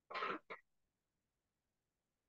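A man clearing his throat: one short burst followed at once by a shorter second one, both within the first second.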